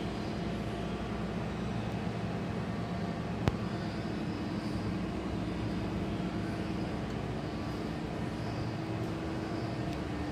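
Steady mechanical hum and rumble with a few faint steady tones in it, and a single sharp click about three and a half seconds in.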